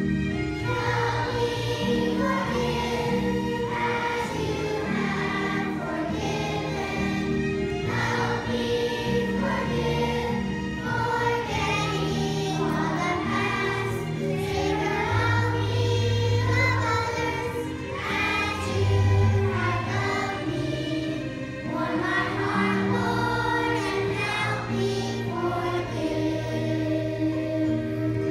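Children's choir singing together, with held low accompaniment notes that change in steps underneath.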